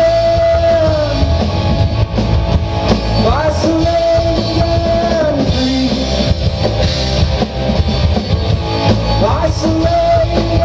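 Live rock band playing: electric guitars, electric bass and drum kit, loud and full. A held melody line sits on top and slides up into a new note twice, about three seconds in and again near the end.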